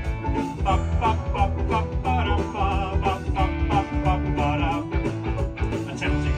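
A man singing a vocal take over a band backing track of guitars and a steady bass line.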